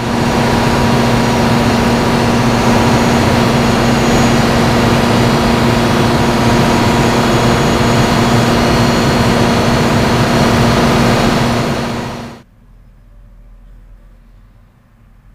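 Caterpillar 2.25-megawatt diesel generator sets running at a steady speed: a loud, even engine noise with a steady hum. It cuts off suddenly about twelve seconds in, leaving only faint background sound.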